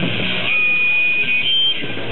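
Punk rock band playing live with amplified electric guitars. A single high, steady tone rings over the music for most of a second, then a slightly higher one sounds briefly.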